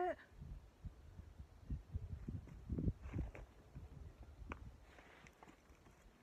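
Quiet outdoor stretch with faint, scattered low thumps and light rustles, the handling noise of a hand-held camera.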